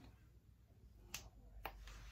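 Two sharp clicks about half a second apart, from a makeup product being handled, with a soft rustle just after, over near-silent room tone.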